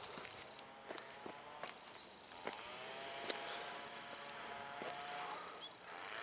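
Footsteps on the grassy mound: a few soft, irregular steps and brushes, with a faint steady hum in the background from about halfway in.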